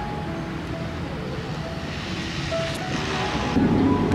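Background music: a slow melody of held notes, over a steady outdoor hiss.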